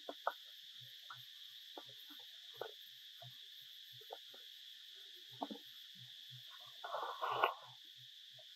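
Steady high-pitched drone of insects, with scattered soft clicks and taps. A louder burst of noise lasts about half a second near the end.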